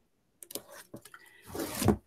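Adhesive backing being peeled off sticky-back foam on a corrugated plastic board: a few small clicks and a faint rustle about half a second in, then a louder scraping rustle near the end.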